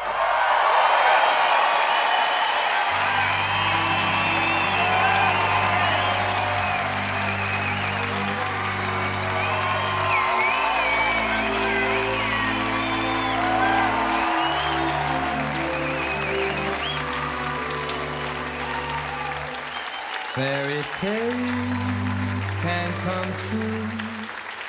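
Audience applauding and cheering right after a song ends, with shouts from the crowd. From about three seconds in, the band plays slow, sustained low chords underneath, changing every few seconds.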